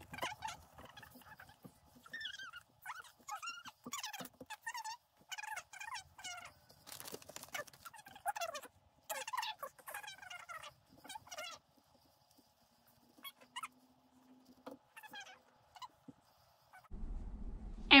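Voices played fast-forward: speech and chatter pitched up high and chopped into short bursts. They thin out to near quiet after about twelve seconds.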